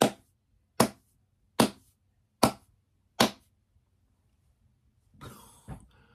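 A man's slow clap: five single hand claps, evenly spaced a little under a second apart, then stopping.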